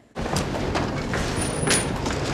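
Film-scene background ambience: a steady rushing noise with a few faint knocks, starting just after a short silence at the cut.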